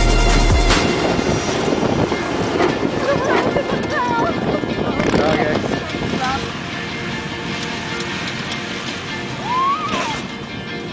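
An electronic dance track with heavy bass cuts off under a second in. It gives way to wind-buffeted outdoor audio of a stripped Chevy S-10 Blazer's engine running as it drives over sand dunes, with a few brief shouts from people.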